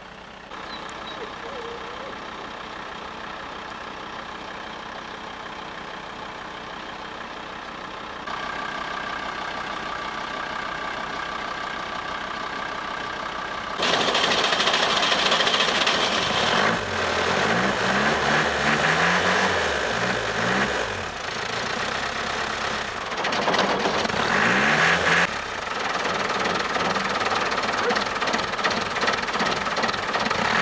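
Chevrolet pickup truck's engine running with the hood open: a steady hum that gets louder about 8 seconds in, then much louder about 14 seconds in, where the engine is revved up and down several times.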